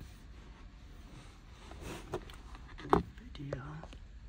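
Faint handling rustle with one sharp click about three seconds in, then a brief low mumble of a man's voice.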